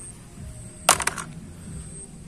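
A quick run of three or four sharp plastic clicks about a second in, from handling the plastic toy guns.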